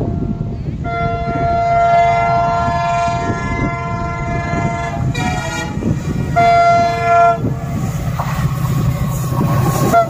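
An approaching WDM-class diesel locomotive sounds its multi-tone horn: one long blast from about a second in, then shorter blasts, over the steady rumble of the engine and train on the track.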